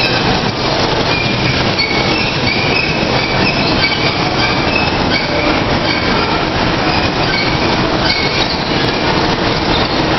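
Kiddie car ride in motion, its miniature jeeps and cars rolling around a steel diamond-plate track: a loud, steady rumble and clatter.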